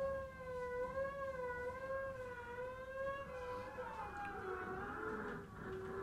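Free-improvising acoustic ensemble: one long held note that slowly wavers in pitch, joined about three seconds in by a second, lower sliding tone and a breathy hiss.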